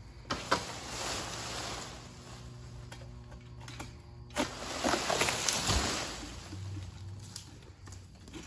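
A long-pole oil palm harvesting sickle rasps and saws at a palm frond with sharp clicks, and the fronds rustle, in two spells. There is a dull thud a little before six seconds in.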